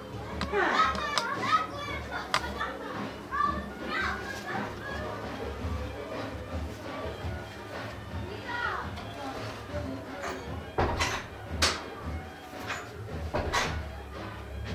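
Children's voices calling and chattering in a room, over background music with a low bass beat. A few sharp knocks come in the last few seconds.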